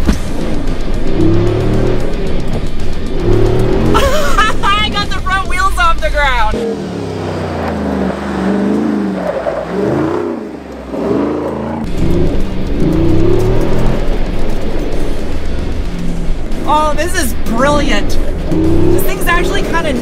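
The Jeep Wrangler Rubicon 392's 6.4-litre pushrod V8 revving hard under wheelspin on loose dirt as the Jeep slides sideways. A woman's excited voice rises over it twice, and for several seconds in the middle the sound is quieter and changes character.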